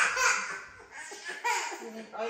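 A young child's voice in short breathy gasps, with a brief high rising squeal about one and a half seconds in.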